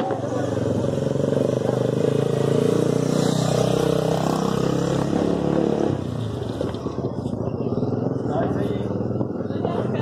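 A motor vehicle's engine running close by in the street, steady and loud, then falling away about six seconds in.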